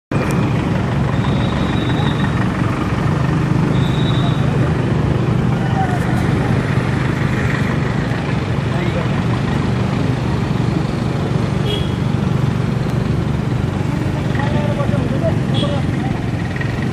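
Road traffic on a flooded street: a steady engine hum over a wash of traffic noise, with two short high-pitched tones in the first few seconds.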